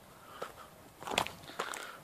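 Footsteps on a stony dirt path: a few separate steps, the loudest a little over a second in.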